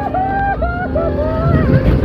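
Riders screaming in a run of held cries, each about half a second long, as a log-flume boat goes down the drop, over a low rushing noise of the descent.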